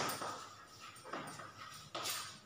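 Faint scratching of chalk being written on a chalkboard.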